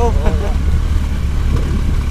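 Steady low rumble of a vehicle ride up a rough cobblestone road: engine and road noise mixed with wind on the microphone. A voice is heard briefly at the start.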